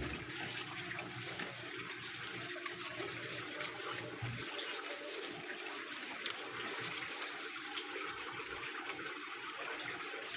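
Steady trickling and splashing of running water, unbroken throughout.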